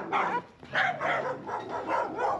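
Small dogs barking in a quick run of short, high yaps, two or three a second.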